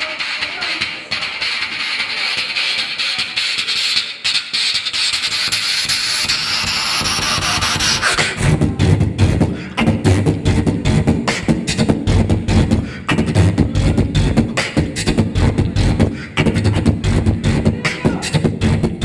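Solo human beatboxing into a handheld microphone. For the first eight seconds or so it is a sustained hiss that sweeps upward. Then the beat drops in, a steady rhythm of deep bass kicks and sharp snare-like clicks.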